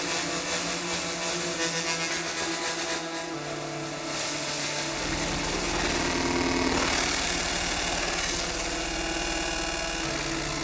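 Eurorack modular synthesizer playing a gritty, sustained ring-modulated drone of several held tones. A deep bass layer comes in about halfway through.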